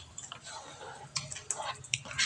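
A spoon stirring thick pancake batter in a mixing bowl: quiet wet stirring with a few light clicks of the spoon against the bowl.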